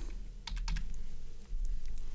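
Computer keyboard keys tapped a few times in quick succession, entering a price into an order field, over a low steady hum.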